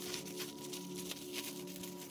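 Soft background music with held tones that pulse gently, and faint crinkling of plastic bubble wrap being unrolled and handled.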